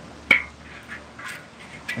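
Metal spatula scraping molten candy off the inside of a copper candy kettle, with one short, sharp scrape about a third of a second in, followed by quieter scraping.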